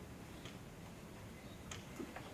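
Quiet room tone with two faint clicks, about a second apart.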